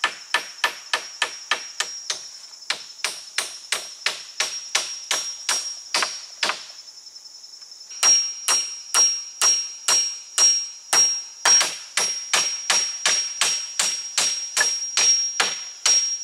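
Claw hammer striking wooden poles in a steady run of blows, about three a second. The blows pause briefly around the middle, then resume louder. A steady high-pitched insect buzz runs underneath.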